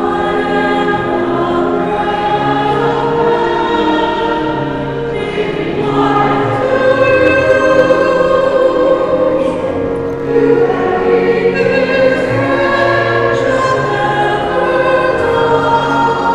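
Church choir singing a slow hymn in long, sustained notes.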